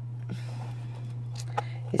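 A steady low hum with a few faint clicks from a clear plastic storage box being handled, its lids being closed.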